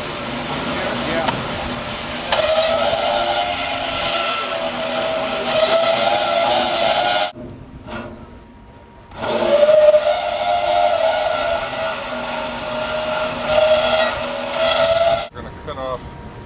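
Porter-Cable portable band saw cutting through a steel box column, its motor whining steadily over the rasp of the blade in the steel. The sawing breaks off for about two seconds about seven seconds in, resumes, and stops shortly before the end.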